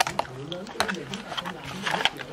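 Several short, sharp clicks and taps, spread unevenly through the two seconds, over faint low talk.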